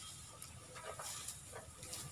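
Faint, intermittent rustling and crackling of cut grass as an elephant swings and handles a bundle of it with her trunk.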